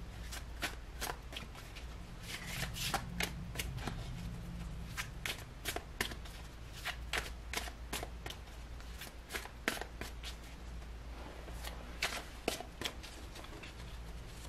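Tarot deck being shuffled by hand: a continuous run of short, irregular card clicks and snaps.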